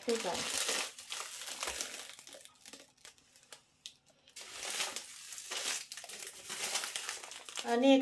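Thin clear plastic bags of chocolates crinkling as they are handled, in two spells with a short lull in the middle.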